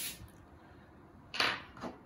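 Mostly quiet room, then a short scuffing handling noise about a second and a half in, and a fainter one near the end, as a hand pats and presses on the plastic battery housing under an electric skateboard deck.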